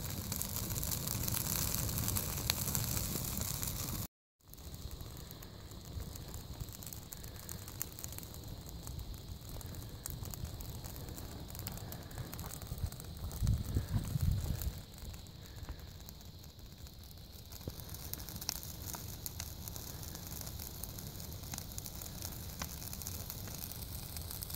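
Open wood fire of pine brush, pallet boards and split logs burning, with faint crackling and hiss. There is a brief low rumble near the middle.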